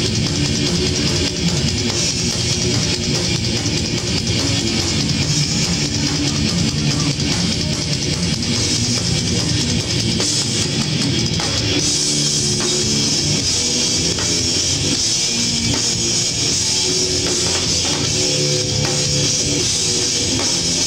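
A live rock band playing an instrumental passage, with electric guitars over a full drum kit.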